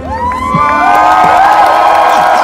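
Large festival crowd cheering, shouting and whooping after a song ends, swelling to full strength about half a second in.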